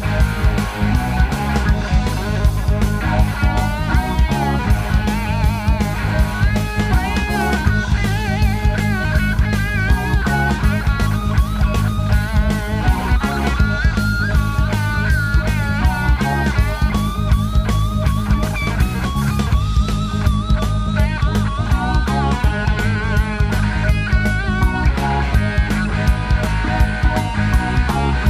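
Live rock band playing an instrumental passage: a lead electric guitar plays bent, wavering notes over a steady drum beat and keyboard.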